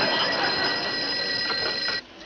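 Desk telephone bell ringing: one continuous ring of about two seconds that cuts off suddenly as the receiver is picked up.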